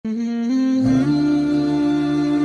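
Wordless hummed vocal intro music: voices holding long steady notes that step up in pitch twice within the first second, with a lower hummed part joining just before one second in.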